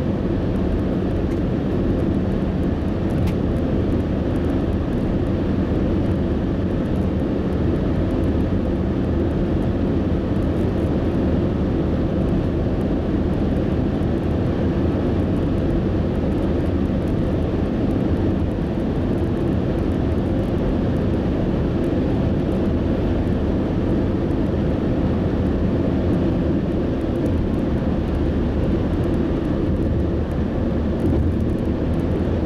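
Steady road noise inside a car cruising at highway speed: tyre roar on the pavement and engine drone, holding even throughout.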